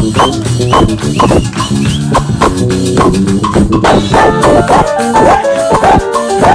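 Live band playing loud, recorded on a phone with poor, overloaded sound: a drum kit keeps a steady beat over a bass line, and held higher notes, likely the saxophones, come in about four seconds in.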